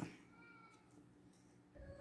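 Near silence: room tone, with a faint, brief high-pitched call about half a second in.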